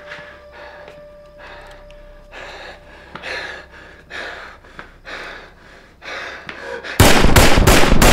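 Heavy, rhythmic breathing, then near the end a sudden, very loud burst of rapid gunfire.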